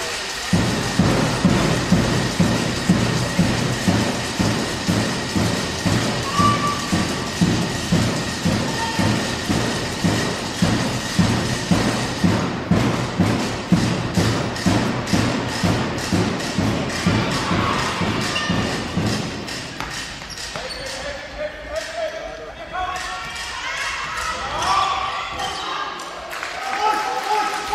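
Spectators' drum beaten at a steady rhythm, about two beats a second, echoing in a large sports hall. About halfway through, sharp rhythmic clapping joins in. Near the end the beat stops and voices shout.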